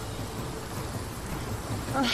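Steady rushing of a shallow river flowing over rocks.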